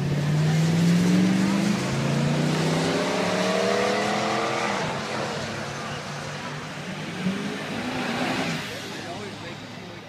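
Drag-racing pickup trucks launching off the line at full throttle, their engines revving up in pitch with a gear change about two seconds in, then fading as they run away down the track.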